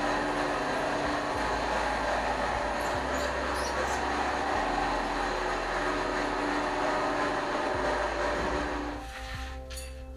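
A small platform lift running as it carries a wheelchair between floors: a steady mechanical rattle and rumble that eases off about nine seconds in.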